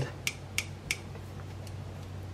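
Gerber Truss multitool being handled and unfolded: three sharp metal clicks of its steel handles and pliers in the first second, then a fainter click.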